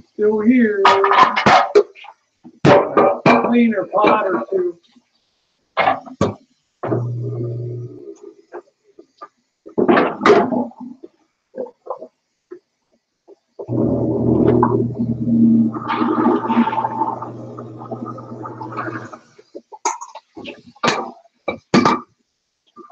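Indistinct voice, heard in several short stretches and cut off between them by abrupt dead silences.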